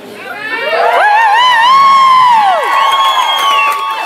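Crowd cheering, with many high-pitched screams and whoops overlapping; they swell about a second in, hold, and trail off near the end.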